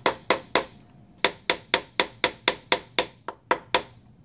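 Nylon mallet tapping a wooden handle onto the tang of a steel scribe held in a vise, driving the handle home over its ferrule. About four sharp taps a second: three, a short pause, then a run of about eleven that stops shortly before the end.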